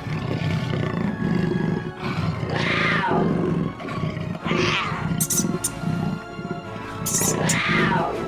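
Big-cat roar sound effects, three of them at about three, four and a half and seven and a half seconds in, over steady background music.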